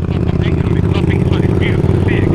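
Motorcycle engine running steadily at low revs as the bike creeps along in slow traffic, heard close up from the bike itself.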